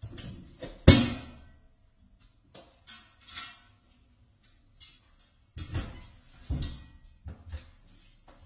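Bangs and knocks: a loud bang with a short ringing decay about a second in, then a few quieter clicks and a cluster of knocks near the end, like a door and a metal frame knocking against things.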